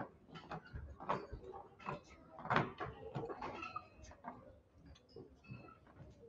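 Irregular knocks and clatter of wooden rod puppets and their handles being handled against the puppet stage, loudest about halfway through.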